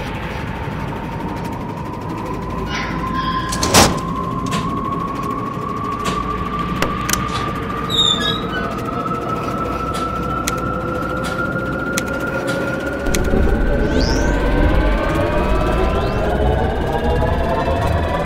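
Sound-effect power-up of a launch console: a steady electric whine that climbs slowly in pitch, joined near the end by several more rising tones as it builds, with switch clicks, the loudest about four seconds in.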